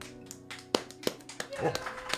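A few light, irregular hand claps, the loudest about three-quarters of a second in, over the faint ring of an acoustic guitar.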